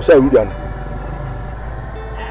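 A man's voice speaks a few short syllables at the very start, then only a steady low background hum with faint level tones continues.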